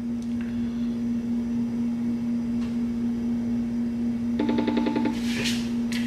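A steady low electrical hum, with a short buzzy tone lasting under a second about four and a half seconds in.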